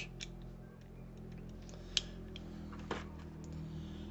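A few faint metallic clicks from handling a Heritage Barkeep single-action revolver freshly lubricated with CLP, the sharpest about two seconds in and another about a second later, over a steady low hum.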